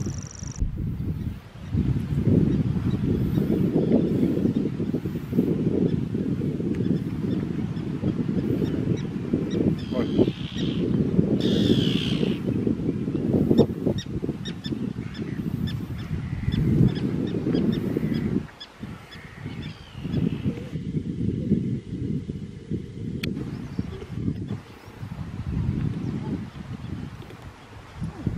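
Wind rumbling on the microphone, with bird calls above it, clearest about ten to thirteen seconds in.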